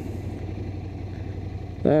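Ducati Scrambler's air-cooled L-twin engine running steadily at low revs while the bike rolls along: an even, low drone with a rumble under it and no revving.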